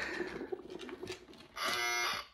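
Electronic buzzer of an Operation-style board game sounding once, briefly, near the end, the sign that the metal tweezers have touched the metal edge around the piece. Before it there is a faint steady hum.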